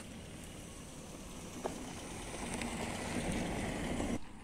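Steady low outdoor background rumble with one sharp click about a second and a half in, growing slightly louder toward the end.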